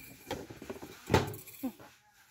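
A glass coffee carafe being slid back into its cardboard box by hand: cardboard rustling and scraping, with one sharper knock about a second in.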